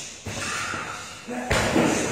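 Strikes landing with two heavy thuds, the second about a second and a half in and louder, followed by people's voices.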